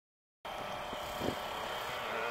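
Off-road motorcycle engines running in the distance over outdoor background noise, a steady engine drone with a slight waver in pitch, cutting in suddenly after a moment of dead silence; a light knock about a second in.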